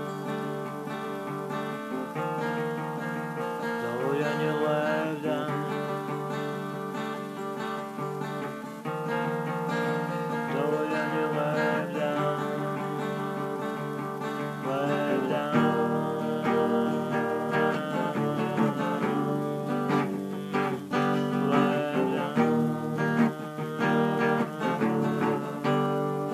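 Music: acoustic guitar strummed and picked, steadily through the passage.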